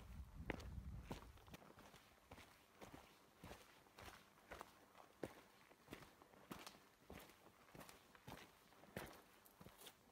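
Faint, steady footsteps of a hiker walking a rocky trail, a little under two steps a second. A low rumble underlies the first second and a half, then drops away.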